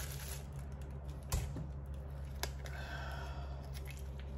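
Quiet handling of raw chicken pieces with gloved hands: two sharp clicks about a second apart over a low steady hum.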